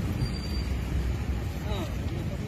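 Outdoor street ambience: a steady low rumble with a faint voice in the distance near the end.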